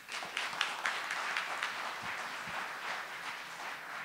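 Audience applauding: many hands clapping in a dense patter that starts at once and slowly eases off.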